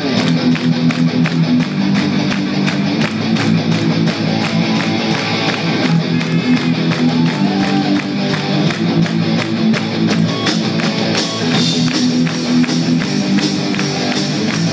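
Live rock band playing: electric guitar and bass guitar over a steady drum beat.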